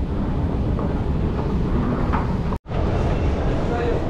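Steady low background noise of a London Underground station, heard while riding the escalator, with faint voices in it; the sound cuts out abruptly for a moment about two and a half seconds in, then resumes.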